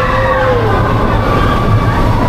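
Expedition Everest steel roller coaster train running fast on its track, a loud steady rumble. Riders' screams glide up and down over it, with one lower cry falling away in the first second.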